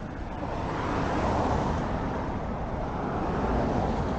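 A car passing on the street: tyre and engine noise that swells over the first second and then holds.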